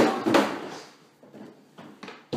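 Thumps of a person knocked backwards onto the floor against wooden kitchen cabinets by a thrown cardboard box: a sharp hit at the start and a second one about a third of a second later, dying away, then a few light knocks near the end.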